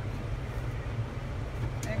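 A steady low engine rumble.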